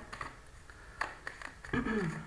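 A tarot deck being shuffled by hand: a soft rustle of cards with a few small clicks, the sharpest about a second in.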